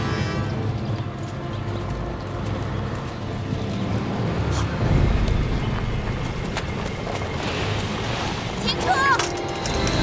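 Background film score over the low rumble of a military truck's engine. Near the end a man shouts at it to stop, twice.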